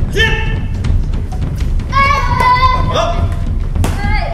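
Children giving high-pitched kiai shouts, a short one just after the start and a longer held one through the second half, while sparring with padded soft weapons. Thuds and knocks of strikes and feet on the wooden floor run through it, with a sharp knock just before the end.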